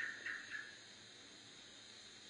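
A man's voice trails off in the first moment, then faint, steady hiss of an old 1980 tape recording with a thin high steady tone in it.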